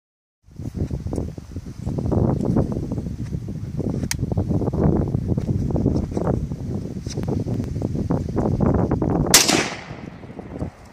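One loud rifle shot from a Yugoslav SKS (7.62×39mm semi-automatic) near the end, the loudest sound, with a short decaying tail. Before it, gusting wind rumbles on the microphone, with a faint sharp crack about four seconds in.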